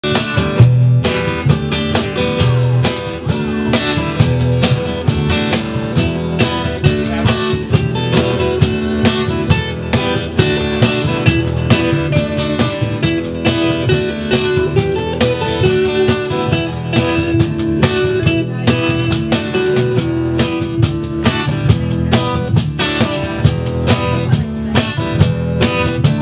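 Live acoustic band playing an instrumental passage with no vocals: acoustic guitar and hollow-body electric guitar over upright double bass, with a cajon keeping a steady beat.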